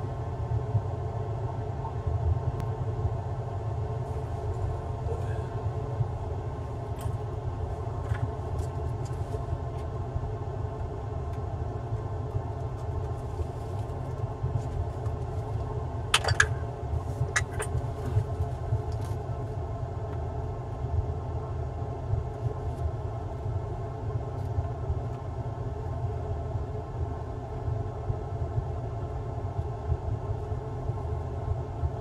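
Steady low hum and rumble of a small motor running, with a few sharp clicks and taps about sixteen to eighteen seconds in as the motherboard and tools are handled on the bench.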